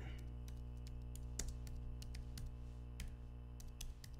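Computer keyboard keys and clicks tapped at irregular intervals, faint, over a steady low electrical hum.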